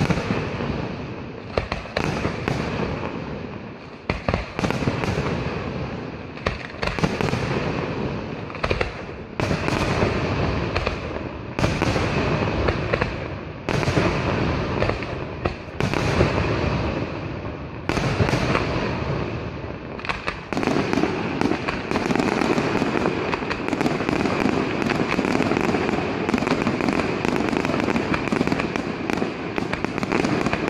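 Pirotecnica Pannella aerial firework shells bursting one after another, each bang trailing off in a fizzing, crackling tail. About twenty seconds in, the firing thickens into a dense, continuous barrage.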